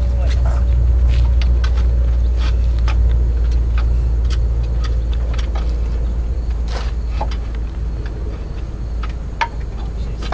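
A steady low rumble with scattered sharp clicks and light taps of hand tools working on a stuck oil filter under a car.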